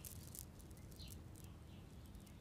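Near silence: faint background ambience with a few short, faint high chirps.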